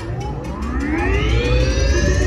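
Roller coaster at its launch point, a rising whine of several pitches climbing together over about two seconds above a steady low rumble, typical of a launch system powering up.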